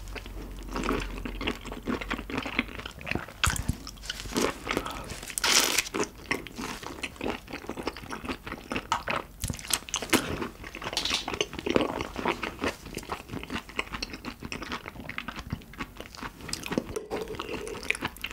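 Close-miked chewing of raw carabinero shrimp: a dense, irregular run of wet mouth clicks and crunches.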